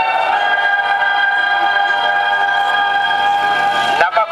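Film soundtrack music over a loudspeaker: one long held chord of many steady tones at an even level.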